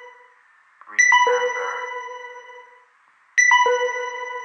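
An electronic chime sounds twice: each time three ringing notes, each lower than the last, struck in quick succession and fading away over about a second and a half, over a faint steady hiss.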